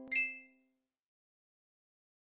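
The last held note of a ukulele jingle dying away, with a single short bright ding sound effect just after the start that rings out within half a second.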